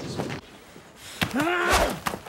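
Fight-scene sounds: a sharp punch impact about a second in, followed by a man's short pained cry and a heavy thud.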